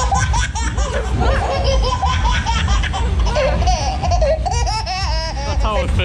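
Riders laughing on a moving fairground ride, over a steady low rumble.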